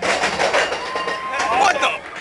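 Expedition Everest roller coaster train running along the track with a loud clattering, rushing noise, and riders shouting over it in the second half.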